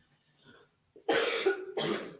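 A woman coughs twice, a longer cough about a second in and a shorter one right after, clearing a frog in her throat.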